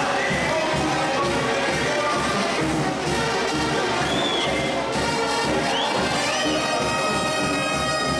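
Brass band music playing steadily, with a few short high whistles over it in the middle.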